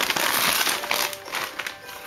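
Crinkling and rustling of gift packaging, a run of quick crackles that is busiest in the first second and then thins out.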